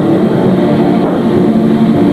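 Metal band playing live: heavily distorted electric guitars holding a sustained, droning chord, loud.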